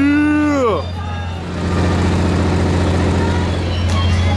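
A person's drawn-out shout in the first second, over a steady low mechanical hum and general outdoor background noise.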